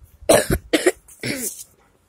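A boy coughing: three short coughs in about a second and a half, the last one longer and softer.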